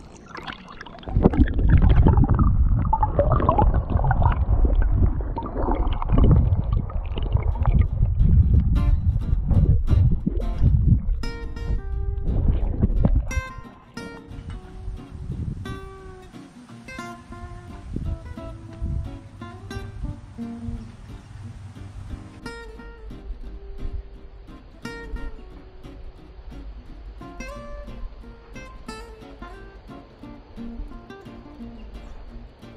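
Shallow creek water rushing right at the microphone for the first half, loud and heavy in the low end. Plucked acoustic guitar music comes in about nine seconds in; the water cuts off suddenly a few seconds later, and the guitar carries on alone, quieter.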